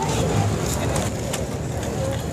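Busy outdoor crowd ambience: a steady low rumble with scattered short clicks and faint distant voices from a crowd of people walking.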